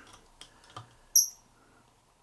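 A squeaky fly-tying thread bobbin gives one short, loud, high-pitched squeak about a second in as it is handled, after a few faint ticks.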